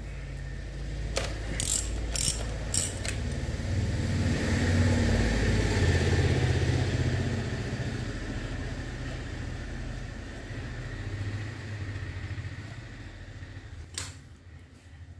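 A few sharp clicks from a socket ratchet wrench in the first three seconds, over a low rumble that builds to its loudest about five to six seconds in and then slowly fades away.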